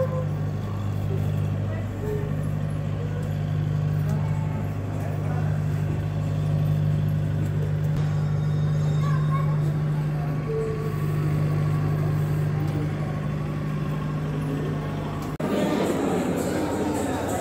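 A steady low hum with faint voices in the background, cutting off suddenly near the end.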